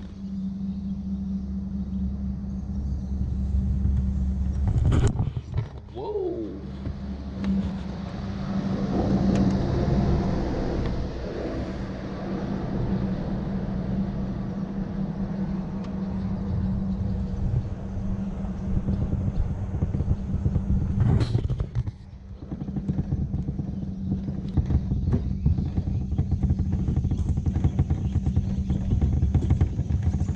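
Tow vehicle's engine running steadily with a low rumble while the jon boat rides its trailer down the ramp and into the water, with sharp knocks about five seconds in and again about twenty seconds in.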